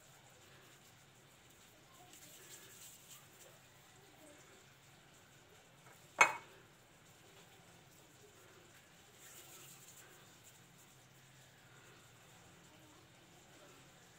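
Faint kitchen handling as yeast dough is divided by hand into small balls, with one sharp clink of a kitchen utensil or dish about six seconds in.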